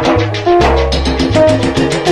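Salsa music in an instrumental passage: a bass line under a quick run of short repeated pitched notes and steady percussion strokes.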